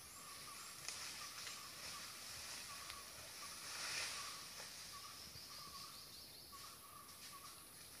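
Faint forest ambience of insects: a steady high hiss that swells about four seconds in, with a short high note repeating over and over, and a few light clicks.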